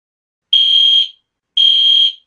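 Fire alarm beeping: a high, steady electronic tone about half a second long, sounding twice a second apart, starting about half a second in. The alarm signals a fire in the house.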